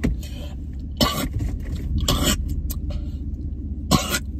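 Steady low rumble of a car cabin, broken by three short, sharp breaths from a man whose throat is burning from the mouthwash he has just swallowed.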